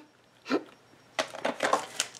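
A plastic page protector in a ring-binder album being handled: a brief soft rustle about half a second in, then a run of light crinkles and taps in the second half.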